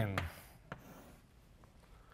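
Chalk writing and underlining on a blackboard: faint scratchy strokes, then a sharp tap of the chalk on the board a little under a second in.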